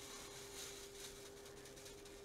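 Faint rattling hiss of diamond-painting drills being shaken in a 3D-printed sorting tray, sliding into its grid grooves.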